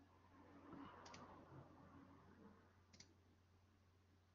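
Near silence on a video call: faint room tone with a steady low hum, a faint rustle in the first two seconds, and two faint clicks, about a second in and again about three seconds in.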